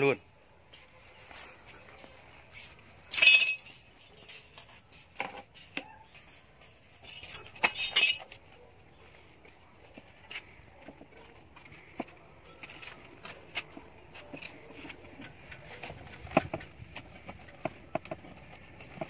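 Scattered metal clinks and short rattles from a steel spit frame and binding wire as a whole suckling pig is fastened onto the spit, the loudest rattles about three and eight seconds in.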